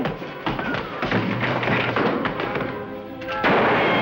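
Background music over repeated thuds and knocks of a staged fistfight. A louder burst of noise comes near the end.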